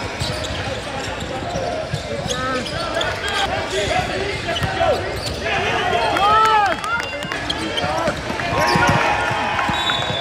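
Basketball game on a hardwood gym floor: the ball bouncing, short sneaker squeaks, and players' voices calling out.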